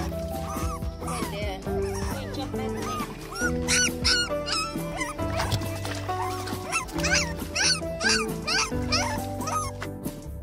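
Background music, with a puppy whimpering and yipping in short, high-pitched calls, in a cluster about four seconds in and again near the end.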